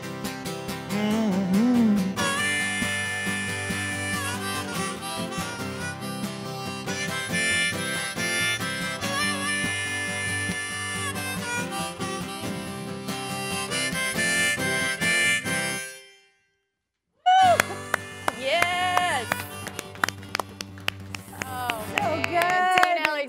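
Instrumental outro: acoustic guitar strummed under a harmonica playing long held notes. The music cuts off suddenly about 16 s in, and after a second's silence short voices follow.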